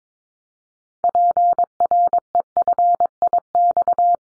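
Morse code sent as a single steady mid-pitched tone at 22 words per minute: a run of short and long beeps spelling an amateur radio callsign prefix, starting about a second in.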